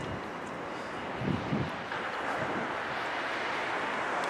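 Steady outdoor city street noise: an even wash of background hiss on a wet street, with a couple of faint low thuds about a second and a half in.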